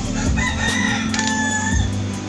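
A rooster crowing: a held call about half a second in, then a second, lower held call, over background music with a steady beat.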